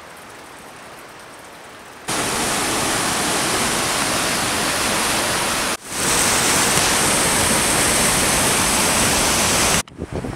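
Loud, steady rushing of whitewater rapids in a mountain river. It starts abruptly about two seconds in, after a faint hiss, and breaks off for an instant near the middle.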